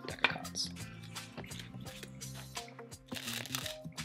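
Quiet background music with held notes, and light clicks and rustles of playing cards being handled.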